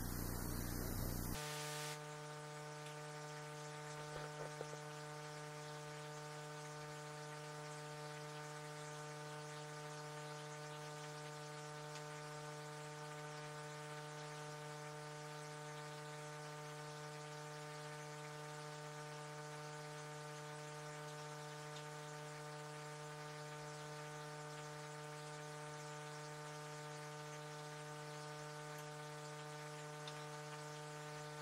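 Steady electrical hum with a stack of even overtones over a faint hiss: the noise floor of the recording, which the uploader puts down to a new microphone under test. A louder hiss cuts off suddenly about a second and a half in, and a few faint ticks come about four seconds in.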